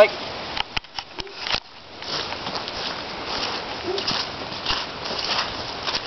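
Footsteps through grass and weeds as two people walk, with a few sharp clicks in the first couple of seconds.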